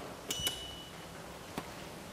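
Elevator call button pressed: a double click and a short high beep confirming the call. A fainter click follows about a second and a half in.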